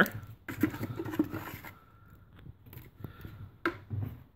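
A hand trowel stirring and scraping through wet cement slurry in a plastic bucket, busiest in the first second or two, then quieter with a few light knocks.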